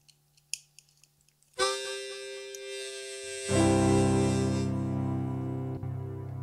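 A few light clicks as a harmonica is handled and set in its neck holder, then about 1.6 s in a blues harmonica sounds a held chord, joined about two seconds later by electric piano chords as the song's intro begins.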